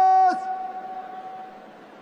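The end of a long, drawn-out shouted drill command from a parade commander. The held note drops in pitch and cuts off about a third of a second in, then its echo dies away around the stadium over the next second, leaving a faint steady crowd background.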